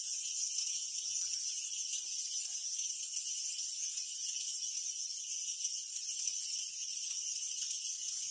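Steady high-pitched drone of an insect chorus, unchanging throughout, with faint scattered rustles beneath.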